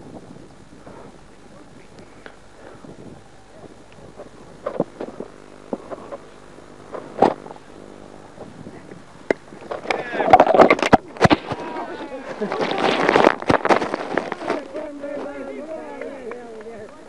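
Indistinct voices calling out across an open field, loudest in two stretches in the second half, with a few sharp knocks earlier on.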